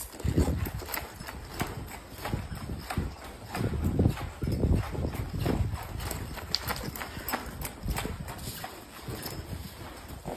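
Hoofbeats of a ridden horse striking the dirt footing of an arena, a rapid run of dull thuds.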